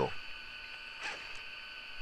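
Faint steady background noise with a thin, constant high-pitched hum, and a couple of very soft ticks a little after a second in.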